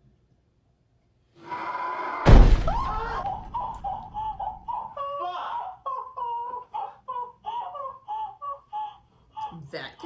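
Horror-film soundtrack: a sudden loud thump about two seconds in, then a woman screaming in short, high-pitched cries, again and again, for most of the rest.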